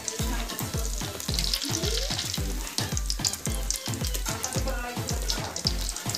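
A luchi deep-frying in hot oil in a karahi, the oil sizzling steadily as a wire skimmer presses the puffing bread. Under the sizzle runs a low, steady beat, about two pulses a second.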